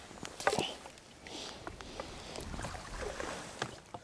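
Faint water splashing with a few light knocks and clicks, as a landing net is lowered into a keepnet in the lake.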